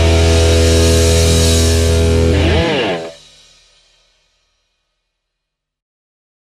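A rock band's closing chord: distorted electric guitar over a heavy held bass note, with a quick bend in pitch just before the band stops about three seconds in. The chord then rings out to silence within a second.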